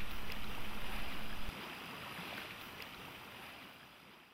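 Steady lake-water ambience, a soft even wash like lapping water and light wind, whose low rumble drops away about a second and a half in before the whole thing fades out.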